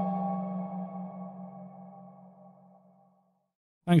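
Background music ending on a held drone: a deep steady tone with fainter higher tones above it, fading away over about three seconds to silence. A voice begins speaking right at the end.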